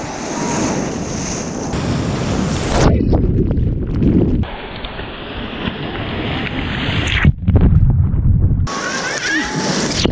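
Ocean surf breaking and rushing around a microphone held in the waves, with wind buffeting the mic. The sound turns muffled for a few seconds in the middle as it dips under the water, then returns with loud rushes of white water near the end.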